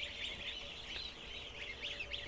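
A large flock of ducklings peeping: many short, high peeps overlapping in a steady chatter.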